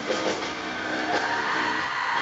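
Live industrial metal played loud through an arena PA: a heavily distorted, dense wall of guitars and drums.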